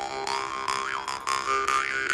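Mohan Dream State bass jaw harp plucked about four to five times a second, its low drone held steady under a twangy overtone line that swoops up and back down twice as the mouth reshapes the sound.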